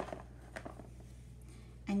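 Faint handling sounds of a damp coffee filter being gathered up by hand: a few light ticks and soft rustles over a low, steady room hum.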